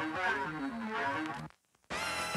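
Music playing from a vinyl record on a turntable: a melody stepping downward over a beat. Near the end it cuts out to silence for less than half a second, then resumes.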